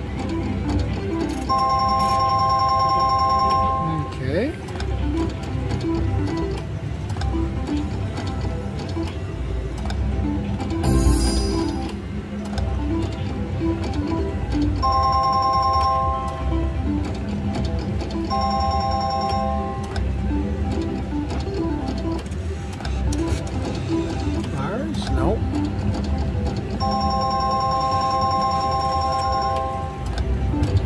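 Slot machine electronic game sounds: a bright ringing electronic tone about two seconds long sounds four times, over a steady run of short beeping electronic notes as the reels spin, against the ongoing din of a casino floor.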